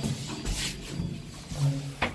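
A few dull knocks and clunks inside a ZREMB lift car, with a short low hum near the end.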